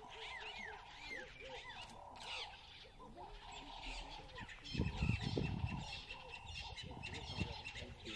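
Wild birds chirping and calling over a steady hum, with a louder low rumbling burst about five seconds in and another shortly before the end.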